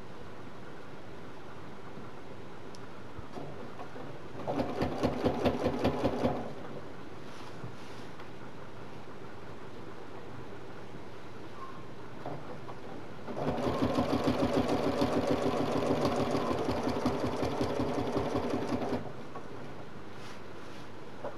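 Domestic sewing machine stitching in two runs during free-motion ruler quilting of straight crosshatch lines. There is a short burst of about two seconds a little over four seconds in, then a longer run of about five and a half seconds in the second half. Between the runs there is only a steady low background.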